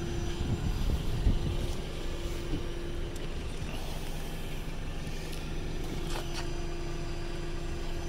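A steady low mechanical hum, with a low rumble of wind on the microphone in the first two seconds.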